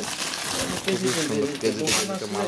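Silver link chains clinking against each other as they are handled, with a sharp metallic clink near the end.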